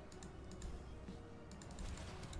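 Faint clusters of quick, sharp clicks, a few near the start, one about two-thirds of a second in and a denser run near the end, over low, quiet background music.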